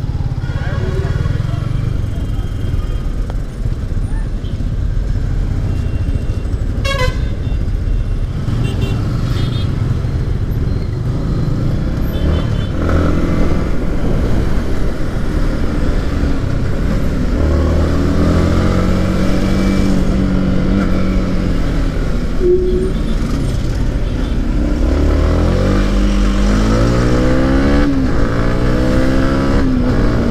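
Yamaha MT-15's 155 cc single-cylinder engine running under a riding motorcycle, with horns tooting in the surrounding traffic in the first half. In the second half the engine note climbs and drops twice as the bike accelerates up through the gears.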